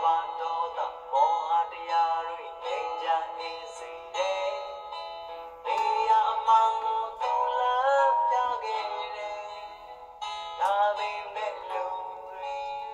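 A song played back from a video: a singer's voice holding and sliding between sung notes over a guitar accompaniment. It sounds thin, with almost no bass.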